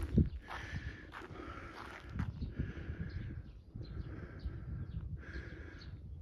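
Footsteps walking across grass: soft, irregular low thuds with bursts of rustling in between.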